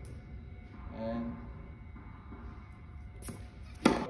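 A single sharp, loud hit near the end, typical of a tennis racquet striking the ball on a serve.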